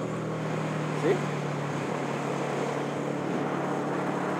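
Motorcycle engine running at a steady cruising speed, a level drone, with wind and road noise over it.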